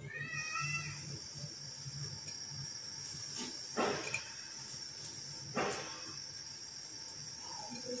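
Chicken kofta balls frying in hot oil in a pot: a steady high sizzle sets in just after the start, with two knocks, about four and five and a half seconds in.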